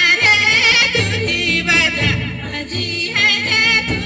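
Folk dance song: a high-pitched, wavering, ornamented singing voice over musical accompaniment with a low, repeated beat underneath.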